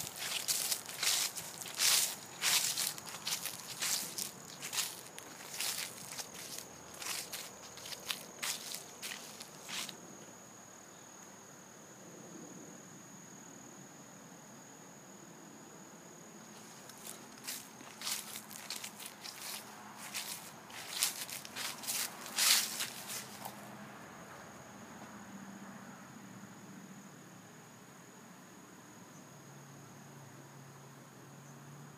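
Footsteps crunching through dry fallen leaves, about two steps a second, in two spells: the first ten seconds, then again from about 17 to 23 seconds, with a quieter stretch between.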